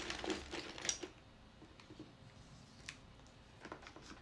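Small decorative pebbles clicking and rattling against each other as they are handled, busiest in about the first second, then a few scattered light clicks.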